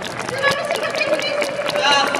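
Speech over a stadium public-address system, including one long held vowel-like sound, against a steady background of stadium crowd noise.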